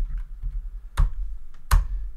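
Typing on a computer keyboard, with a few light key taps and then two sharp key clicks, about a second in and near the end, over a low steady hum.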